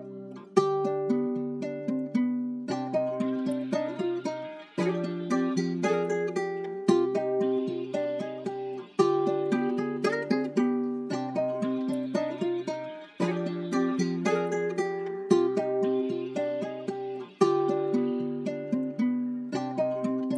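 Dark trap-style guitar loop: a plucked guitar melody with reverb and delay, repeating in phrases about every four seconds, layered with a sampled vocal loop and no drums.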